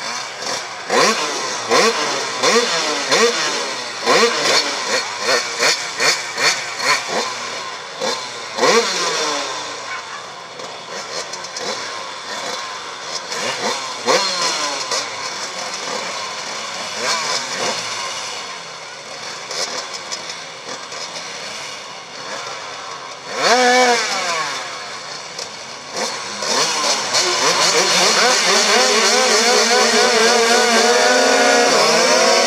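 Several speedway motorcycle engines at the start gate, blipped up and down in many quick revs. Near the end they are held at high revs together.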